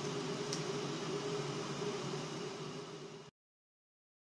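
Pot of lentil soup simmering on the stove: a steady hiss over a low hum, fading slightly before stopping abruptly about three seconds in.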